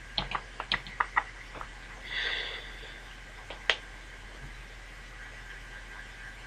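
Computer keyboard keys clicking in a quick, irregular run for the first second and a half or so, then a short soft hiss about two seconds in and a single click near the middle, over a faint steady hum.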